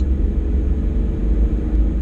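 Inside a moving car's cabin: a steady low rumble of engine and road noise while driving.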